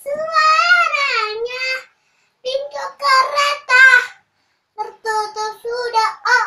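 A young girl singing unaccompanied, in three short phrases with brief pauses between them.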